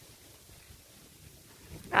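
Faint, even outdoor background noise with nothing standing out, and a woman's voice starting right at the end.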